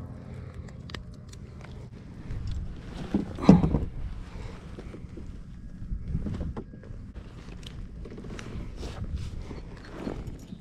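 Handling sounds on a fishing kayak as a bass is unhooked and laid on a measuring board: scattered clicks and knocks over a low rumble, with one louder thump about three and a half seconds in.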